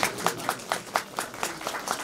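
An audience applauding, with the separate hand claps distinct.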